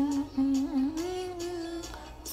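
A woman humming a slow tune, holding long notes that waver a little in pitch, stopping just before the end.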